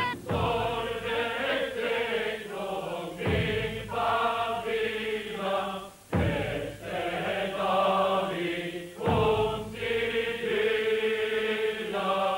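Choir singing a slow, solemn chant in long held notes, with a deep drum stroke about every three seconds at the start of each phrase.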